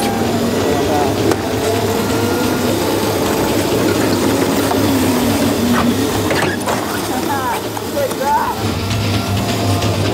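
Small electric drift go-karts driving on wet pavement, their motors whining and rising and falling in pitch with speed, with people shouting briefly near the end.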